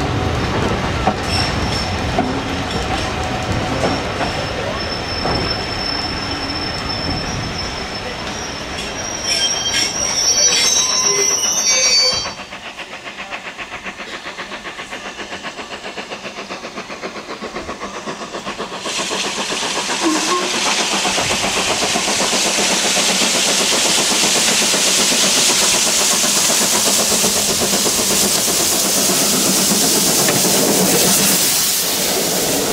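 Steam-hauled heritage train carriages running along the track, with a high wheel squeal through the first dozen seconds. This gives way suddenly to a quieter, even rhythmic clatter of wheels over the rail joints. From about two-thirds of the way in, a loud steady hiss sets in as BR Standard Class 2MT steam locomotive 78018 comes up on the other line and passes close alongside.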